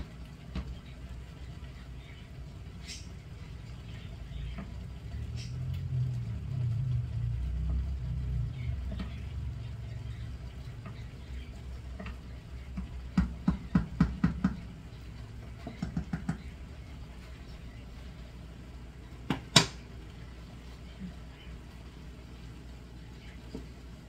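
Wooden spoon stirring undercooked farfalle in a pot of boiling water: quick runs of knocking and clinking around the middle and one sharp knock near the end, the stiff pasta still clinking against the spoon, a sign it is not yet al dente. A low rumble swells and fades in the first half.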